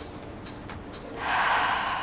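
A woman's long, forceful breath out through the mouth, starting about a second in and tapering off: the release of a deep breath held for a count of five.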